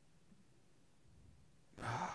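Near silence with faint room tone, then near the end a man's breath into a close microphone, a short rising hiss without voice.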